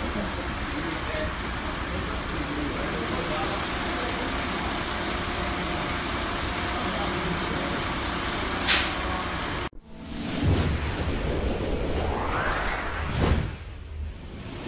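Steady loud hiss of natural gas (methane) escaping from a damaged roadside gas supply column after a car struck it, with a brief sharp noise a little before it ends. About ten seconds in it cuts off suddenly and gives way to a news sting of whooshes and a rising swoosh over music.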